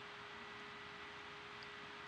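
Faint room tone: a steady hiss with a faint constant hum and no distinct events.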